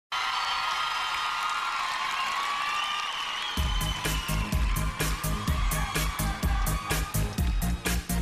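A large arena crowd cheering and screaming, then about three and a half seconds in a pop song starts suddenly with a heavy repeating bass line and a steady, quick drum beat.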